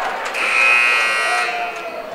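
Gym scoreboard buzzer sounding once, a steady electric tone lasting about a second, marking the end of a volleyball timeout.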